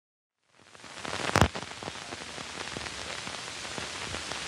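Steady hiss fading in from silence, with scattered crackles and one loud pop about a second and a half in: the surface noise of an old film soundtrack as it starts.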